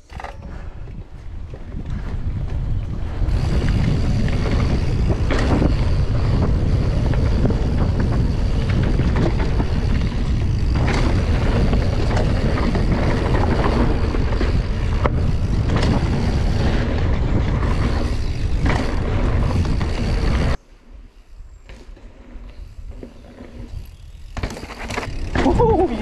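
Wind buffeting the microphone and tyre roar from a Scott Spark RC full-suspension mountain bike riding fast down a dirt trail, with occasional sharp knocks from the bike over bumps. The noise drops suddenly about twenty seconds in to a much quieter rolling sound.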